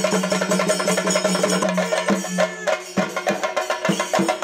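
Chenda drums beaten with sticks in a fast, dense rhythm of temple percussion, with a steady low held tone under the first part; the sound changes abruptly about three seconds in.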